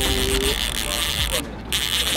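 A man's drawn-out excited exclamation over a steady high-pitched whir that drops out briefly near the end.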